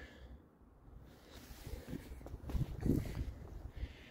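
Faint, irregular low rustling and soft steps, starting about a second in: footsteps and handling noise of a hand-held camera being carried around a parked motorcycle.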